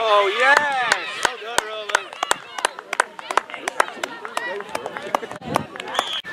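Spectators shouting in the first second, then scattered hand claps from a small crowd as a try is scored.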